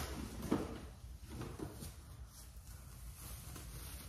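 Groceries being handled and unpacked: a few light knocks and rustles of bags in the first second and a half, then fainter rustling.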